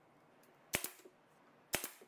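Plywood top board knocking against the wooden side panels as it is set in place: two sharp wooden knocks about a second apart, each with a quick lighter rebound.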